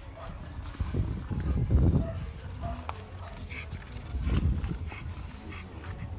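A bully-type pit bull panting close to the microphone, in two spells: a longer one starting about a second in and a shorter one about four seconds in.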